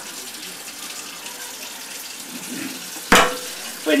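Water running steadily from a kitchen sink's spray hose into a sink of bath water, with one sharp knock about three seconds in.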